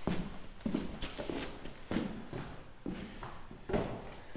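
Footsteps on a concrete floor: a person walking, about two soft steps a second.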